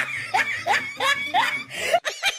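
Giggling laughter: a run of short high 'ha' bursts, about three a second.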